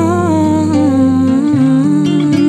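A woman's wordless singing, a sustained melodic line wavering with vibrato, over soft acoustic guitar accompaniment in a voice-and-guitar MPB song.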